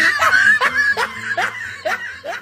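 A young man laughing in a run of short laughs, about two or three a second, dying away toward the end.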